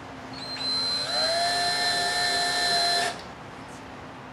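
Power drill driving a screw through a small metal hinge into a wooden box. The motor rises in pitch as it spins up, runs steadily for about two seconds, and cuts off suddenly.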